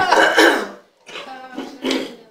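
A person coughing and clearing their throat close to the microphone: a loud rough cough in the first half-second, then softer throat sounds and another short cough near the end.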